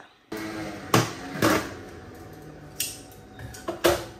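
Kitchen cookware being handled: several sharp knocks and clinks, the loudest about a second and a second and a half in, over a faint steady hum.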